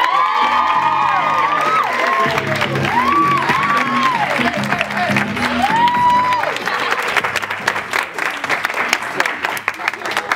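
Music with a sung melody for the first six seconds or so, giving way to the audience applauding and clapping through the second half as the music drops away.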